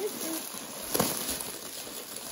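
Clear plastic wrap crinkling as it is pulled off a plush panda toy, with two sharper crackles about a second apart.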